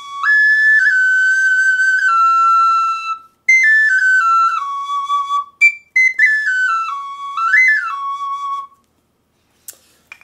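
Small four-hole pocket flute made of Japanese knotweed, played in a high, clear tone. A held phrase of a few notes gives way, after a short breath, to two descending runs of stepped notes, the second with a quick rise and fall before it settles on a low note and stops about a second before the end.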